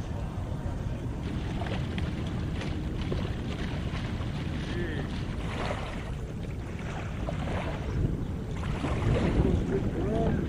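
Wind on the microphone over open river water, a steady low rumble with light water sounds from paddle boards being paddled.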